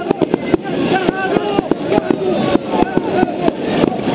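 A rapid, irregular string of firecrackers banging, about four or five cracks a second, over a crowd's shouting voices.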